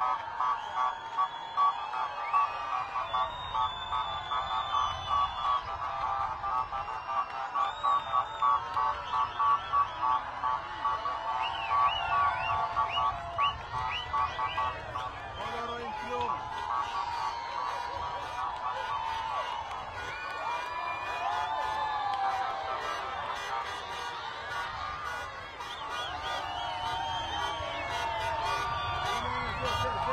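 Vehicle horns honking in a fast, even rhythm, about two blasts a second, through the first half, over a cheering crowd. In the second half the honking fades and the crowd's voices take over, shouting and singing.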